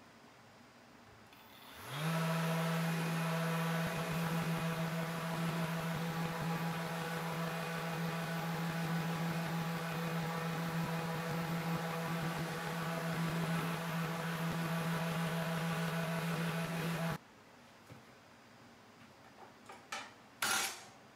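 Random orbital sander, its pad wrapped in a microfibre cloth, buffing furniture wax on a cast iron table saw top. It spins up about two seconds in, runs with a steady hum, and cuts off suddenly a few seconds before the end.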